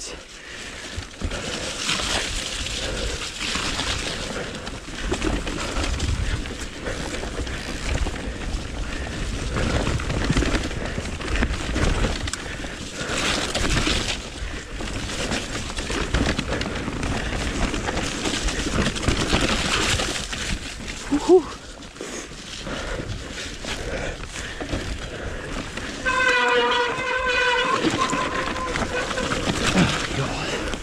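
Mountain bike riding noise on a dirt forest trail: tyres rolling over soil and roots, the bike rattling, and rumbling wind on the camera microphone, swelling and easing with the terrain. Near the end a brief wavering pitched tone stands out for about two seconds.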